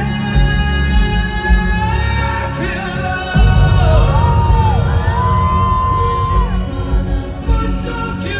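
Rock band playing live: held chords at first, then drums and bass come in loudly about three and a half seconds in, with a sliding high lead line over them.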